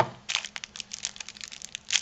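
Small clear plastic bags crinkling as they are handled: an irregular run of crackles, louder near the end.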